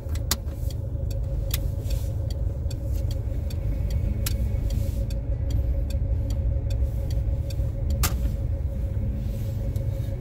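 Car running at low speed, with a steady low rumble and an even hum. Scattered sharp clicks and taps through it, one louder tap about eight seconds in.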